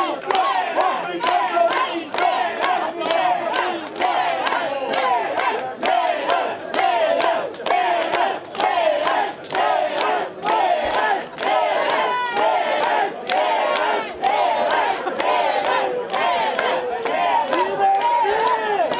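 A crowd of many voices shouting and chanting together over steady rhythmic clapping, about two claps a second.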